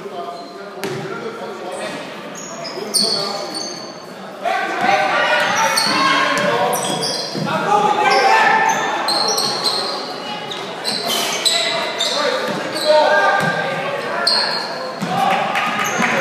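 Basketball game on a hardwood gym floor: the ball bouncing, sneakers squeaking and players and spectators shouting, echoing in a large hall. The shouting grows louder about four and a half seconds in as play gets going.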